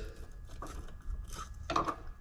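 A few light metallic clinks and scrapes from a hand ratchet and Torx bit working at a truck's door hinge bolts.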